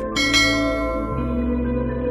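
A bright bell chime sound effect, struck twice in quick succession near the start and ringing out over a second, over steady ambient background music.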